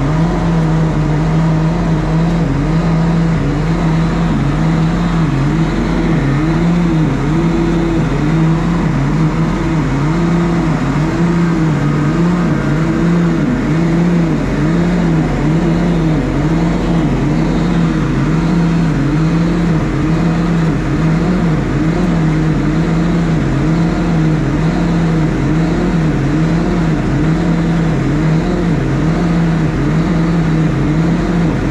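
Nuhn self-propelled sand bedder running while its spreader throws sand out the side: a loud, steady machine drone whose pitch wobbles up and down about once a second, over a hiss of flying sand.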